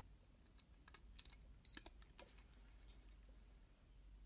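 Faint plastic clicks and handling noise as a JST balance-lead plug is pushed into the socket of a small battery voltage checker: a few scattered clicks, the loudest near the middle, with a very short high tone at the same moment.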